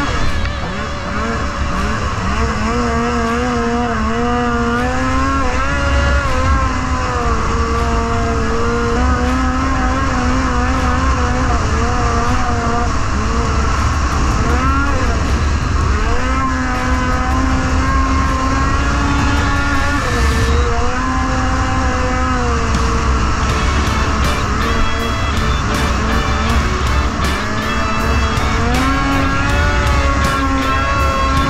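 Polaris IQR 600R's two-stroke twin-cylinder engine running under way on a snowmobile, its pitch rising and falling as the throttle is worked, over a steady low rumble.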